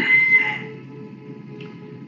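Soft background music of quiet sustained tones, heard under a short pause in the talk just after a word trails off.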